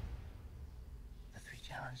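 A low rumble from a film soundtrack, then, about one and a half seconds in, a voice begins a short hushed, whispered line of dialogue.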